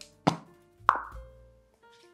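Plastic cap popped off a spray can of cake-release agent and set down on a countertop: two sharp clicks a little over half a second apart, the second with a short ring, over soft background music.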